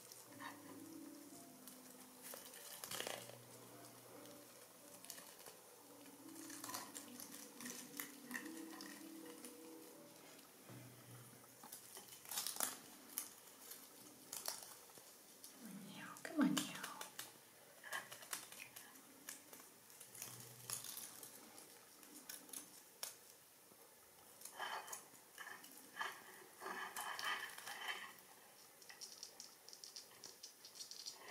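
Faint rustling and scattered small clicks of a death's head hawkmoth being handled in the fingers and fed from a cap of honey with a wooden toothpick, with denser clicking near the end.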